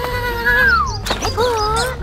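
A cartoon character's long, held cry that slides down in pitch about halfway through, followed by a short sharp thump at about one second and then a brief wavering vocal sound, over background music.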